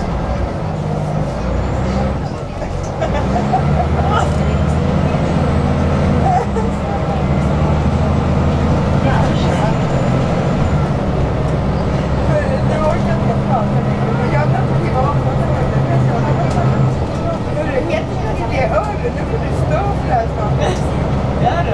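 Inside a moving city bus: the low drone of the bus's engine and drivetrain, shifting in pitch a few times as the speed changes, over steady road rumble from the tyres.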